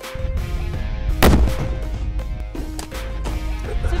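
An avalanche-control explosive charge, a two-pound PETN cast booster, detonating once about a second in, a single sharp blast with a short echoing tail, over background music.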